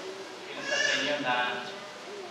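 A man's voice over a microphone: one spoken phrase of about a second near the middle, with quieter speech around it.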